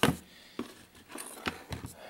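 Handling noise from a KC Apollo Pro 6-inch driving light being moved about on a wooden table: a sharp knock right at the start, then a few faint clicks and taps.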